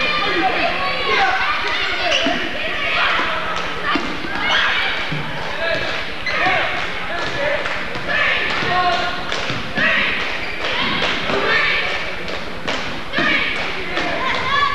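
A basketball dribbled on a hardwood gym floor, a run of bounces amid other thumps, under a constant background of voices.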